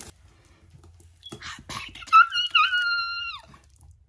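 Cardboard box flaps rustling and knocking as a shipping box is opened. Then a loud, very high-pitched excited squeal from a woman, lasting over a second, wavering and dropping in pitch as it ends.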